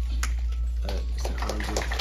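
Banquet-hall background during a pause in amplified speech: a steady low hum, with faint room murmur and several light sharp clicks, and a brief filler 'uh' from the speaker.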